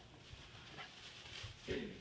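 A dog's brief vocalisation, falling in pitch, near the end, over faint scuffling.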